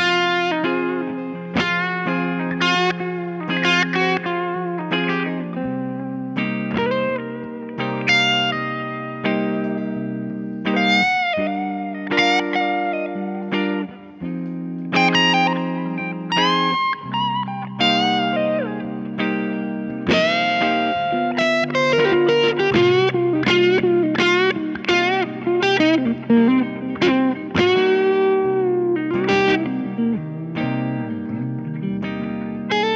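A 2007 Gibson Les Paul 1957 Reissue Goldtop with humbucker pickups, played through a 1963 Fender Vibroverb amplifier. It plays a lead passage of picked single notes with string bends and vibrato over lower notes that keep ringing, pausing briefly about halfway through.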